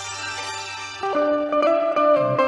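Bulbul tarang (Indian keyed banjo) playing a melody of plucked, ringing notes over a backing track with a steady low bass. About a second in, a louder melody note comes in and is held.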